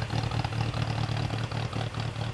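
An engine idling close by: a loud, steady low rumble with a slightly uneven beat.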